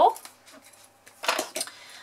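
A short clatter of a hard handheld paper punch being set down on the craft work surface, about a second in, with a few quick clicks.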